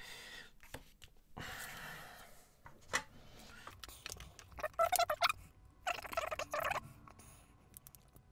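Faint handling sounds of a circuit board with potentiometers being set down and arranged on a desk: a brief rustle, a single click about three seconds in, and more short rubbing sounds near the middle.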